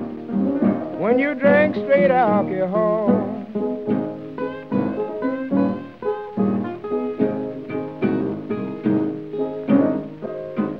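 Late-1920s blues record with piano and acoustic guitar: a wavering, bending melody line in the first few seconds, then a run of evenly plucked guitar notes over the accompaniment.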